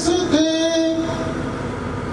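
A man singing a verse of Urdu poetry into a microphone, holding one long note that fades away a little past halfway, leaving a low hiss.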